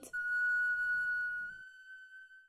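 A French flageolet holding one long, steady high final note of a short tune, which fades away near the end.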